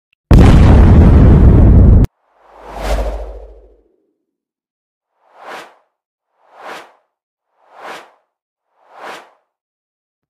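Intro sound effects: a loud blast of noise lasting about two seconds that cuts off abruptly, then a whoosh with a low rumble, then four short swooshes evenly spaced a little over a second apart.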